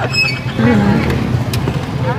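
A motor vehicle engine running steadily in the street, a low even hum under people's voices.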